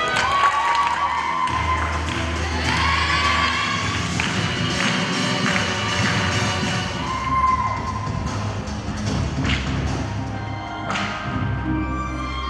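Recorded music for a rhythmic gymnastics routine playing over the hall's speakers, with a few thuds from the gymnast's leaps and landings on the mat.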